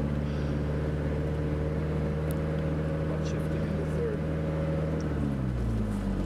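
A vehicle's engine running steadily while driving along a sand track, a low even drone whose note drops slightly about five seconds in.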